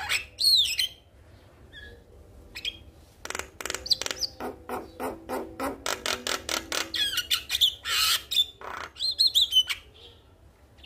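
Male Javan myna calling. A high whistled note comes near the start, then a short quiet pause, then a fast run of clicking notes at about five a second from about three seconds in. The run is mixed with high whistles and harsh squawks toward the end.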